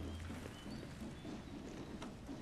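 Quiet background ambience: a steady low hum with a few faint short high chirps and light ticks.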